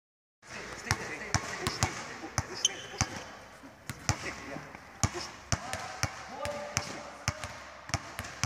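Several basketballs dribbled at once on an indoor court, giving an irregular run of sharp bounces that starts about half a second in.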